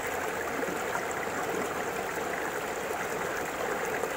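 Steady sound of flowing river water, an even rush without breaks.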